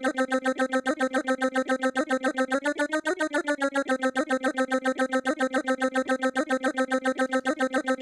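PPG Phonem vocal synthesizer singing a tempo-synced chain of rapid 'dah' syllables on one held note, about eight to nine a second. About three seconds in, the pitch bends briefly up and back down, and the chain stops abruptly at the end.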